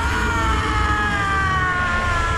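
A dragon's cry: one long screech that slowly falls in pitch, over a low steady rumble.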